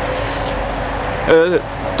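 Steady road traffic noise from a busy multi-lane road alongside, a continuous rumble with a wash of tyre noise. A short vocal sound breaks in about a second and a half in.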